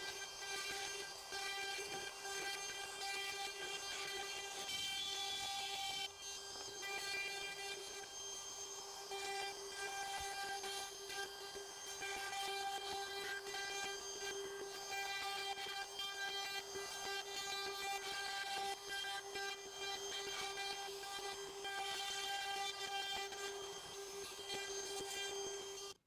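DeWalt cordless plunge router with a quarter-inch upcut spiral bit running at a steady whine while pattern-routing a plywood handle blank along a template, heard quietly. The sound dips briefly about six seconds in.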